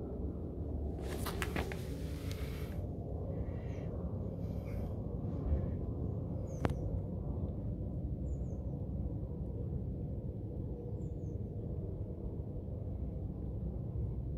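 Steady low outdoor background rumble, with a brief rustle early on, one sharp click about halfway through, and two faint high chirps later.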